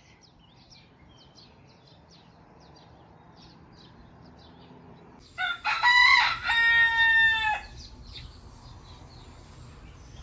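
A rooster crowing once, loud and lasting about two seconds, beginning about five seconds in. Before it, faint short chirps of small birds.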